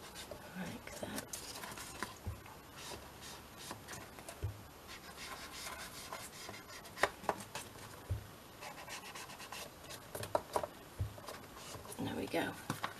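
Small ink applicator rubbed along the edges of a card journal cover, a faint scratchy rubbing, with a few light knocks as the card and tool are handled.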